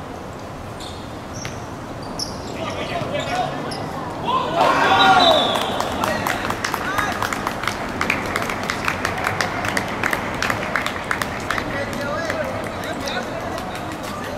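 Footballers' voices shouting out about five seconds in as a goal goes in on a hard outdoor court, followed by a long string of sharp slaps and taps with voices calling over them.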